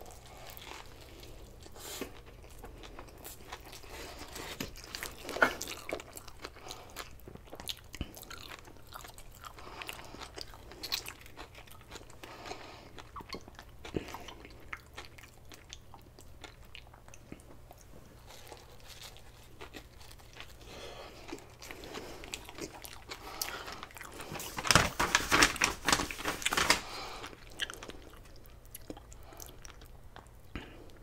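Close-miked chewing of a mouthful of sushi burrito (nori, rice and fish), with many small wet clicks throughout and a louder, denser stretch of chewing about 25 seconds in.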